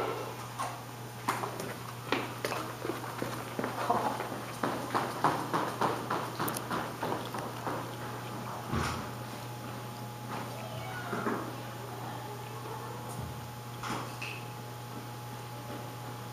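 Footsteps on a hard tiled floor: a run of short sharp taps, quickening for a couple of seconds, then a few scattered knocks, over a steady low building hum.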